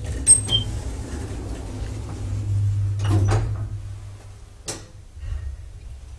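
Small hydraulic elevator setting off: a sharp clunk, then a steady low hum from the drive that swells about three seconds in and eases off. A few more knocks come over the hum.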